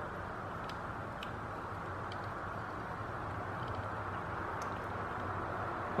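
Faint, scattered ticks of a hand screwdriver turning a folding knife's pivot screw as it is tightened down, over a steady background hiss.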